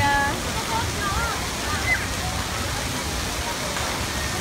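Steady rush of running water from water-play features, with scattered voices and shouts of people over it.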